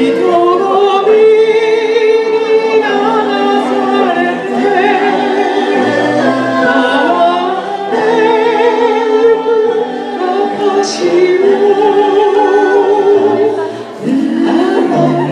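A small mixed vocal group, women's voices with a man's, singing a song together in harmony through handheld microphones and a PA.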